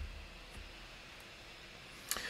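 Faint steady hiss with a low hum: the microphone's background room tone, with nothing else happening.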